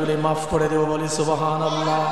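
A man's voice chanting a sermon in a sung delivery, holding one steady pitch through most of the phrase, with a few hissing consonants.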